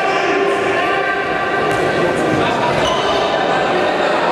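A futsal ball being kicked and bouncing on a sports hall floor during play, set in a steady din that echoes around the large hall.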